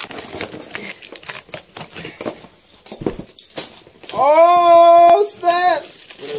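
Packaging being torn and crinkled as a small box is forced open, a quick run of rustling and ripping for about four seconds. Then a loud, long vocal cry held about a second, followed by a shorter one.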